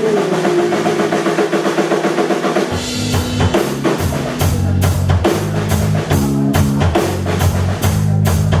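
Live rock band playing without vocals: at first only a held note rings, then about two and a half seconds in the drum kit and bass guitar come in and the full band plays on with a steady beat.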